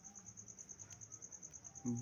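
A faint, high-pitched trill of rapid, evenly spaced pulses that keeps on steadily, over a low hum.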